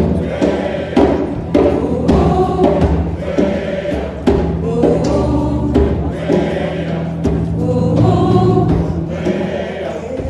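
Large mass gospel choir singing with a live band, a drum beat striking steadily under the voices.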